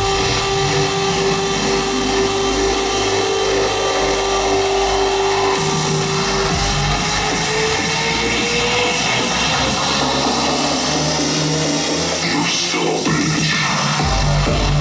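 Electronic dance music over a club PA in a breakdown. The kick drum and bass drop away, leaving a long held synth note, which gives way about halfway in to a slowly rising synth line.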